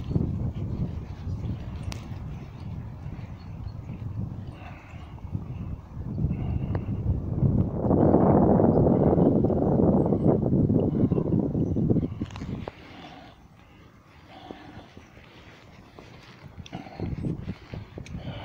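Wind buffeting the microphone while walking outdoors, a low rumble that grows loudest for several seconds in the middle, then drops off suddenly, leaving faint footsteps and movement.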